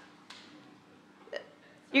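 A mostly quiet pause in speech, broken by one brief short laugh a little over a second in; a spoken word begins at the very end.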